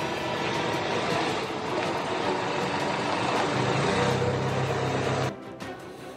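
Outdoor street noise with a heavy vehicle's engine running. A low steady hum joins near the end, and the sound cuts off suddenly about five seconds in.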